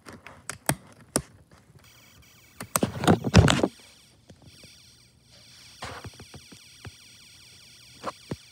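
Snap Circuits whistle chip, a piezo buzzer driven by the alarm IC, giving a shrill electronic alarm tone that starts about two seconds in and keeps going. Small plastic clicks of snap parts being handled come before it, and a loud thump of a hand on the board about three seconds in.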